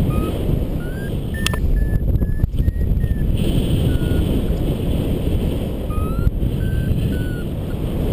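Wind rushing over the microphone of a paraglider in flight, a steady loud roar. Scattered short high beeps or chirps sound through it, some sliding upward in pitch.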